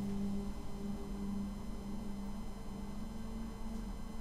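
Faint low hum with a few soft held tones under it; no speech.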